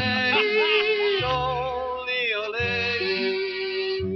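A wordless cowboy-song yodel, the voice flipping and sliding between notes over a string-band accompaniment with plucked bass notes. The sound is the narrow, top-cut sound of a 1930s radio recording.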